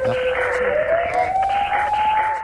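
Programme transition sound effect: a single siren-like tone that dips slightly, then rises in pitch from about halfway through, over a steady rushing noise.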